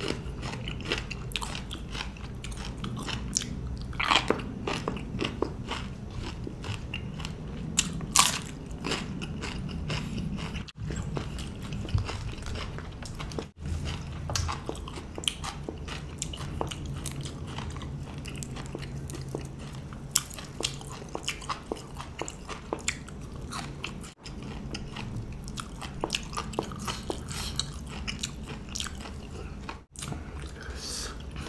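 Close-up chewing and crunching of raw vegetables and herbs, a run of irregular crisp crunches with louder bites about four and eight seconds in.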